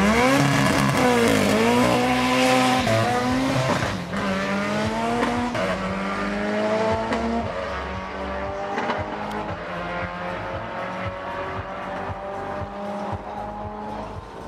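Two street cars launching off a drag strip start line, their engines revving hard through the gears. The pitch climbs and drops back at each upshift, four or five times, and the sound fades steadily as the cars run away down the quarter mile.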